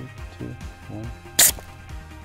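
Background music, with one short, sharp hiss about one and a half seconds in: a brief puff of CO2 from the trigger valve of a CO2 bike-tyre inflator fitted with a metal straw.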